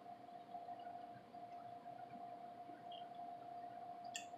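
Very quiet room tone with a faint steady hum, and a few faint mouth sounds of chewing french fries.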